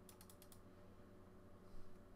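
Near silence, with a quick run of about five faint clicks of a computer keyboard in the first half second and a brief soft sound near the end.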